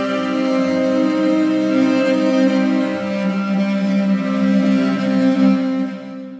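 Sustained chord from the LORES sample library's 'My Destiny' preset, layering cello, baritone sax and horse fiddle, held steady on the same pitches.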